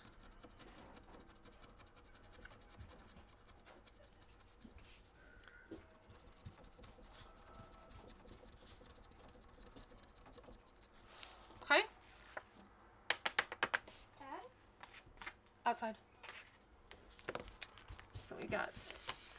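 Faint scratching of a scratch-off panel on a printed card, rubbed with a thin tool to reveal the amount underneath. There are short scraping strokes, most closely bunched around the last third.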